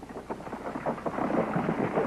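A steady, thunder-like rumbling and crackling noise with no clear pitch, on an old television soundtrack.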